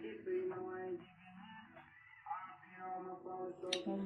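Faint speech in a small room, in two stretches with a quieter gap between them, and a short sharp click near the end.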